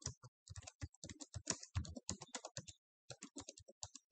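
Computer keyboard being typed on: a quick, irregular run of key clicks, with a short pause a little under three seconds in.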